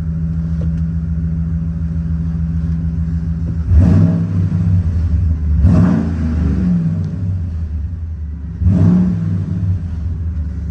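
A 2005 Dodge Ram 2500's 5.7-litre Hemi V8 idling steadily, heard from inside the cab. About four seconds in it is revved, then twice more roughly every two to three seconds, rising sharply each time before settling back.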